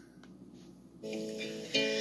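After a quiet first second, an acoustic guitar is strummed: one chord rings from about a second in, then a second chord near the end.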